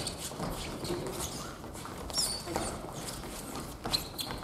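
Sports shoes shuffling and thudding on a wooden gym floor during a rally, with brief high shoe squeaks about two seconds in and a sharp knock near the end.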